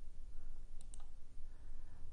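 Low steady hum of room noise, with a few faint clicks about a second in.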